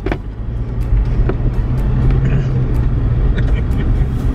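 Car cabin noise on the move: a steady low rumble of engine and road, with a few faint clicks.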